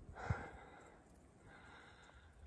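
A hiker's heavy breathing: one breathy exhale just after the start, with a short low thump in the middle of it. He is out of breath from climbing a steep trail in the heat.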